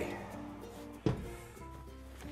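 A built-in wall oven door being shut, one sharp knock about a second in, over quiet background music.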